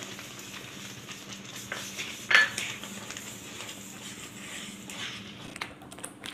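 Wooden spatula stirring sugar into thick apple puree in a metal pan, scraping and knocking against the pan, with one sharp knock a little over two seconds in.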